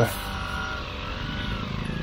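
String trimmer running steadily as it cuts long, overgrown grass.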